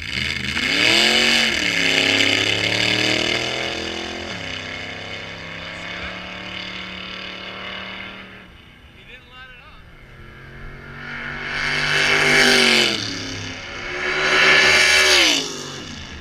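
Drag-racing car engine launching at full throttle, its pitch climbing and dropping at gear changes about one and a half and four seconds in, then holding and fading away down the track. Later an engine revs up again twice, each rise peaking and cutting off.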